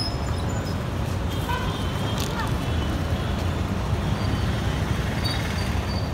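Street traffic noise: a steady low rumble of vehicles running past.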